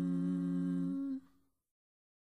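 Closing ident jingle ending on a steady held chord, which cuts off about a second in and leaves silence.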